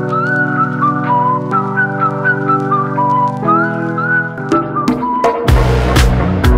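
Background music: a whistled melody with sliding notes over held chords. About five seconds in the chords stop and low thuds come in.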